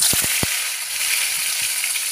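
Eggplant slices coated in salt and turmeric go into hot oil in a kadai and sizzle at once, with a few soft knocks as the slices land in the first half second. The sizzle then settles into steady frying that eases slightly.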